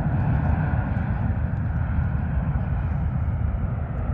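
Boeing 737-800's CFM56-7B turbofan engines at climb-out power just after takeoff: a steady, continuous jet rumble with a faint higher whine that slowly fades as the aircraft climbs away.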